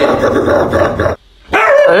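A dog's snarling vocalizing stops abruptly about a second in. Near the end a dog lets out a long, wavering howl.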